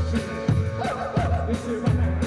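Live rock and roll band playing an instrumental passage between sung lines: upright double bass, drum kit and electric guitar. A steady beat sits under a bouncing bass line.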